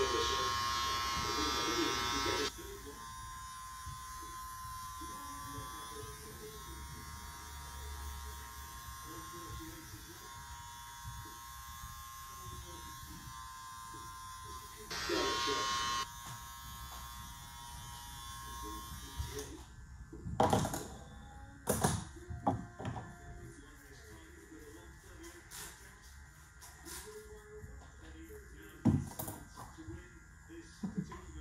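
Electric beard trimmer buzzing steadily as it cuts the beard and sideburns, louder when held close in the first couple of seconds and again about halfway. The buzzing stops about two-thirds of the way through, and a few sharp clicks and knocks follow.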